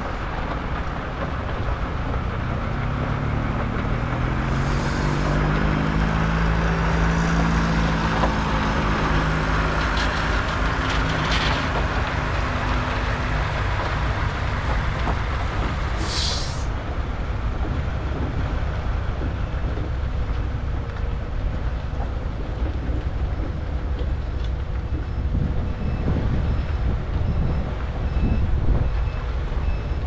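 Diesel semi truck driving: its engine climbs in pitch through the first several seconds as it accelerates, then settles into steady road noise. Two short hisses of air come about five and about sixteen seconds in.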